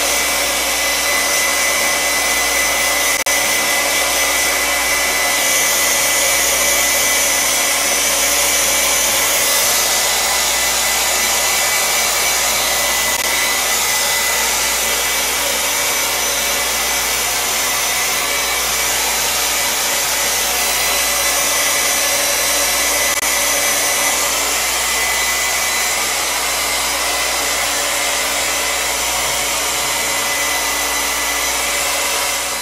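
Handheld hair dryer running steadily, a continuous rush of air with a faint high whine over it.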